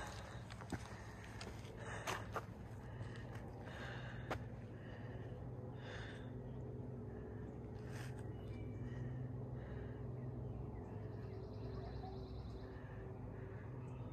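Quiet outdoor ambience: a faint, steady low hum with a few faint, short high chirps and the odd soft click.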